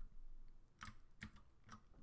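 Three faint computer keyboard keystrokes, about half a second apart, starting a little under a second in.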